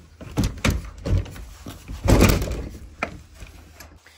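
Weathered wooden shed door being pushed shut by hand: a few wooden knocks, then a louder, longer scrape about two seconds in, with faint clicks near the end.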